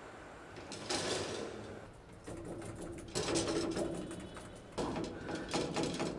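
Metallic clattering and rattling in an old cage lift with a collapsible grille gate. There is a short rush of sound about a second in, then rattling over a faint hum, and a run of quick clicks near the end.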